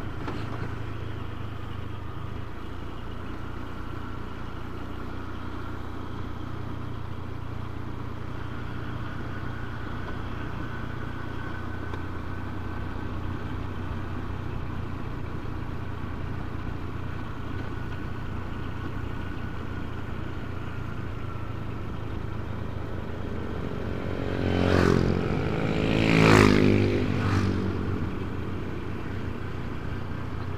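Motorcycle engine running steadily at low revs, heard from the rider's seat, with a constant low hum under road noise. Near the end a louder engine sound swells and fades twice within a few seconds.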